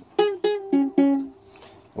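Ukulele in standard G C E A tuning strummed four times on one chord, the strokes about a quarter-second apart, then left ringing and fading out.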